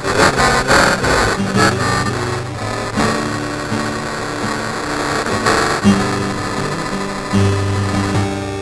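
Acoustic guitar playing an instrumental passage at the end of a song. Over the first three seconds a dense, irregular clatter of sharp noisy sounds sits on top of the guitar; after that the guitar notes go on alone.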